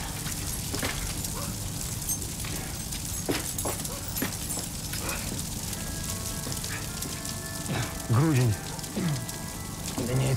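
Fire crackling steadily through a burning wooden building. A man gives a loud, strained shout about eight seconds in.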